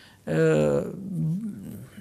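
A man's drawn-out hesitation sound: a held 'ehh' for about half a second, then a shorter, wavering hum.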